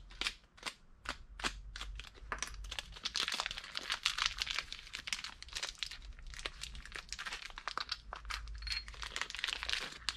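Small clear plastic parts bag crinkling and crackling irregularly as it is handled in the hands, over a faint steady low hum.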